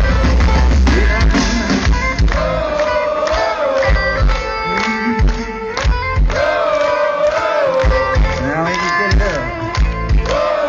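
Live heavy metal band playing, led by an electric guitar line with bent, wavering notes over drums, recorded from among the audience.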